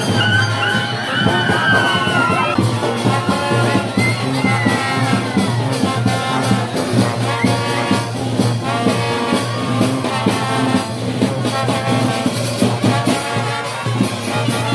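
A brass band playing porro: trombones, trumpets and a tuba over a steady bass line and an even percussion beat, with sliding horn notes in the first few seconds.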